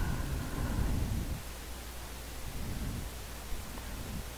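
Steady background hiss with a low hum, a microphone's noise floor, with faint low rustling in the first second or so that then dies away.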